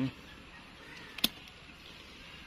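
A single sharp click a little over a second in, after a brief hummed 'mm' from a man's voice at the start.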